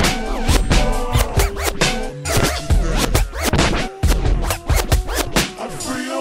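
Slowed-down hip hop beat with turntable scratching and stuttering chopped cuts over it, between rapped verses.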